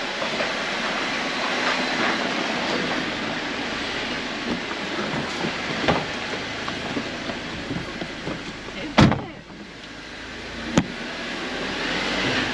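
Lifted Jeep on 37-inch tyres driving over loose rock inside a narrow mine tunnel: a steady mix of engine and tyres on gravel, with a sharp knock about nine seconds in and a smaller one near the end.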